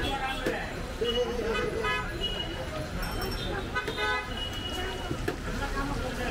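Busy street ambience: people talking, with traffic noise and short vehicle-horn toots about two seconds and four seconds in.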